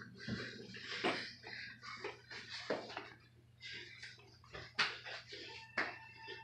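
Scuffling and irregular thumps of bodies tumbling on a carpeted floor during rough play, with four sharp knocks. A steady high tone starts near the end.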